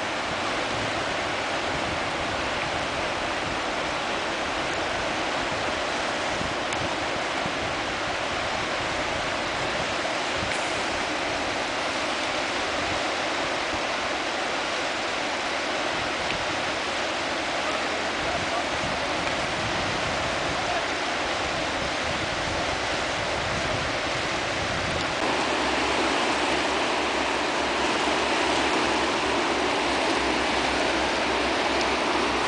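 Water rushing and churning through the gates of a river dam, a steady rushing noise that grows a little louder near the end.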